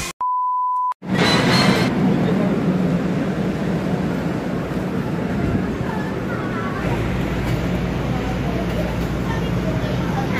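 A single steady beep tone, just under a second long. Then the steady interior noise of a passenger train car, with a low rumble coming in about seven seconds in.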